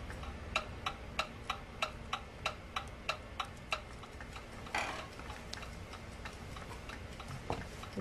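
Ticking clock, likely a sound effect: even sharp ticks about three a second, strongest in the first four seconds and then fainter. A brief soft rush of noise comes about five seconds in.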